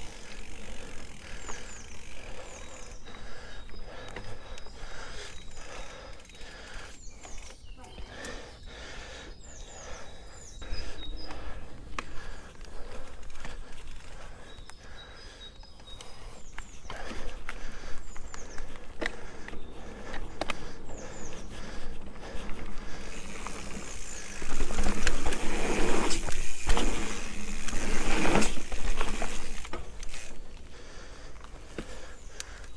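Mountain bike ridden along a dirt forest trail: tyre noise on the dirt with the frame and chain rattling, and birds chirping now and then. Near the end the bike rattles loudly for several seconds over rougher ground.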